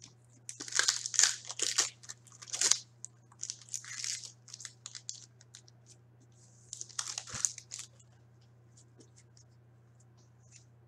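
Foil wrapper of an Upper Deck hockey card pack being torn open and crinkled, in three clusters of quick crackling tears, near the start, around four seconds in and around seven seconds in.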